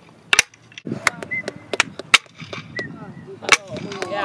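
Two blocks of wood slapped together, giving several sharp, unevenly spaced claps, a pair close together near the start, then single claps.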